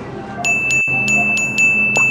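A high, steady electronic chime-like tone with pulses several times a second, starting about half a second in, over a low background hum.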